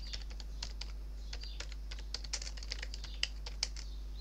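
Typing on a computer keyboard: a quick, irregular run of key clicks as a street name is typed, over a steady low hum.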